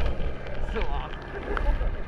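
Low, steady drone of a helicopter flying off, with wind rumbling on the helmet-mounted microphone and a few short voices.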